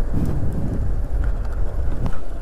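Wind rumbling on the microphone of a moving motorcycle's camera, mixed with road and tyre noise. It is steady and low, with no clear engine note.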